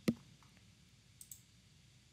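Computer mouse clicks: one sharp click at the start, then two faint clicks a little past a second in, over quiet room tone.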